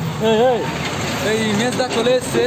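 A heavy lorry drives past close by, its engine rumbling low and steady under people's voices.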